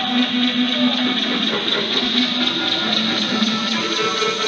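Rock band playing live, with electric guitar prominent in a dense, steady mix.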